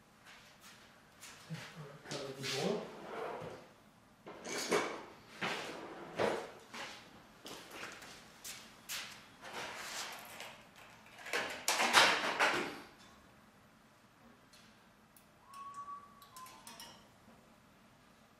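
Hand tools and wire being handled and sorted: a string of short rustling, scraping and clattering noises, loudest about twelve seconds in. A brief squeak follows about fifteen seconds in.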